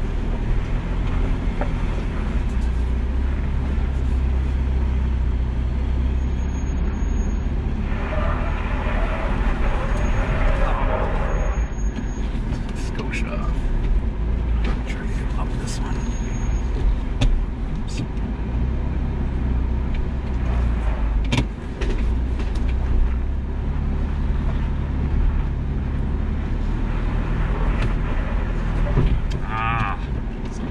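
2021 Ford Bronco engine running at low crawling speed, a steady low rumble, with scattered knocks as the truck climbs over rock; one sharp knock comes about two-thirds of the way through.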